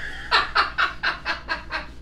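Hearty laughter: a run of about eight short, breathy bursts, roughly four a second, growing fainter toward the end.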